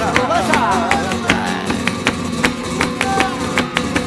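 Flamenco music: a singer's wavering, ornamented vocal line on sung syllables in the first second, over acoustic guitar, with sharp percussive hits keeping the rhythm at about three a second.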